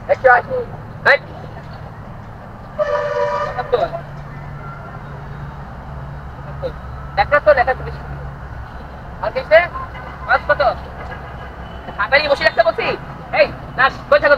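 A vehicle horn sounds once, a steady pitched honk of about a second, over a low rumble of a passing motor vehicle, between bursts of talk.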